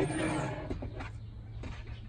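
Heavy-duty 50-inch steel ball-bearing drawer slide being pulled open: a rolling, rattling slide that lasts under a second, followed by a few faint clicks.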